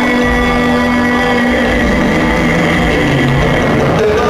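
Loud live band music with long held notes, the pitch steady for the first couple of seconds before shifting.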